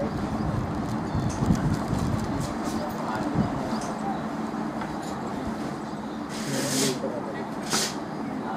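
Steady outdoor background rumble with indistinct voices from around a cricket field. Two short hissing noises come near the end.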